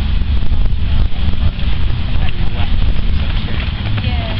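Wind buffeting the camera's microphone: a loud, uneven low rumble, with faint voices in the background.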